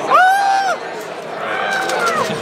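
A person's high-pitched, held cry of amazement at a magic trick's reveal: one loud drawn-out 'ooh' of about half a second right at the start, then a second, softer one starting near the end.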